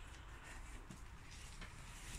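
Near silence: faint room tone with a low rumble.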